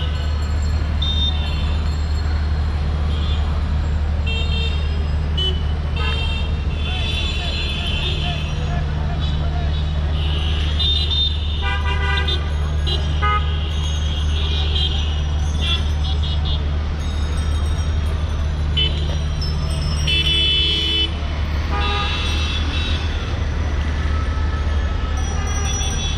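Busy city intersection traffic: many short vehicle-horn toots and honks, scattered and overlapping, over a steady low hum.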